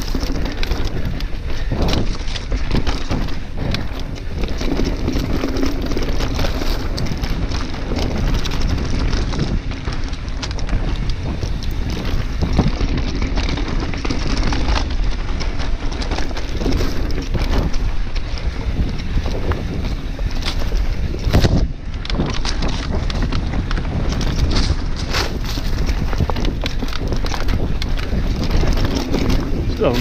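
Mountain bike rattling and clattering at speed over rough, rocky singletrack: tyres on rock and dirt, with the bike knocking over the bumps. Wind rumbles on the handlebar camera's microphone.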